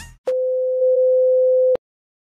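A single steady electronic beep at one pitch, lasting about a second and a half. It gets a little louder after its first half-second and cuts off suddenly. The tail of the intro music dies away just before it.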